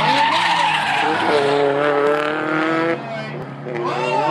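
Drift car sliding sideways, its rear tyres skidding while the engine is held at high revs. The engine note sweeps early on, holds steady, then drops off suddenly about three seconds in.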